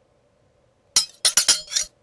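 A quick run of about five sharp, glassy clinks with bright ringing, starting about a second in and lasting under a second.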